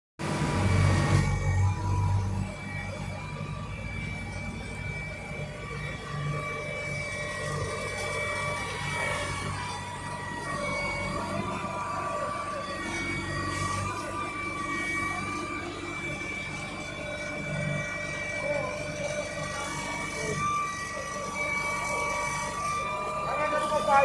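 Volvo ABG5870 asphalt paver running as it lays asphalt: a low diesel engine hum with steady high whining tones over it, louder for the first two seconds.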